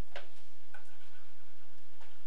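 A single sharp click about a fifth of a second in, over a steady low hum.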